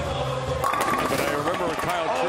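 Bowling ball rolling down the wooden lane, then hitting the pins about half a second in, with a short clatter of pins scattering. Crowd voices follow.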